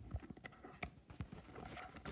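Soft, irregular taps and clicks, a few a second, of playing cards being handled and shuffled through by hand.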